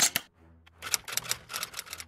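Two sharp clicks, a short pause, then a fast run of typewriter-like clicks: an edited-in sound effect for an animated logo.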